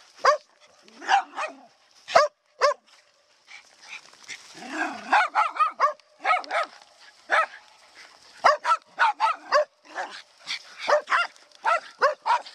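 Spitz dogs barking over and over in short, sharp barks, most densely about four to six seconds in and again in quick runs near the end.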